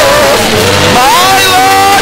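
A man singing a long held note, his voice sliding up about a second in and holding a higher note.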